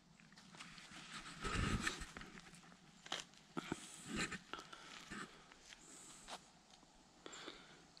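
Faint, irregular crunching and rustling in dry fallen leaves and forest litter, with scattered small clicks, as a mushroom is cut out at the base of its stem with a knife. The loudest stretch of rustling comes about one and a half seconds in.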